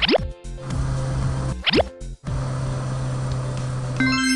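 Cartoon sound effects over children's background music: two quick rising 'bloop' glides, one right at the start and one just under two seconds in, with a steady low hum and hiss between them while the toy car moves into its parking space.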